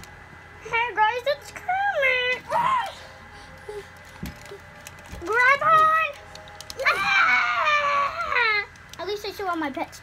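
A child's voice making wordless whimpering, crying sounds in pretend play, voicing toy figures in distress. It comes as a series of short sliding calls, with the longest and loudest wail about seven seconds in.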